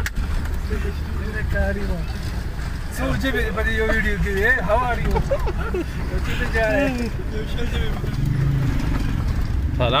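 Steady low rumble of a vehicle's engine and road noise while riding slowly along. People's voices talk over it from about three to seven seconds in.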